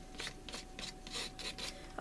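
Glass dip pen scratching quick, short strokes across mixed-media paper, faint, several strokes a second.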